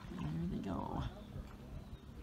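A person's voice calling out indistinctly for about a second, then fading into the background.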